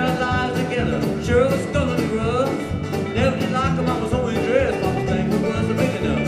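Live bluegrass band playing a song: a male lead singer over strummed mandolin, guitar and drums with a steady beat, recorded from the audience.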